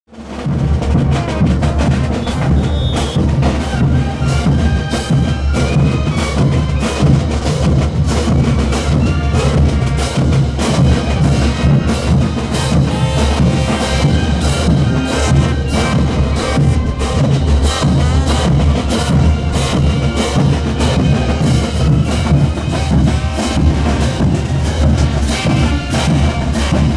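A marching band playing festival dance music: bass drums, snare drums and crash cymbals beat a steady rhythm under a brass melody. It fades in at the very start.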